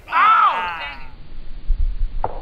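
A person's loud, drawn-out groan-like exclamation, rising then falling in pitch and lasting about a second. Low rumbling thumps follow near the end.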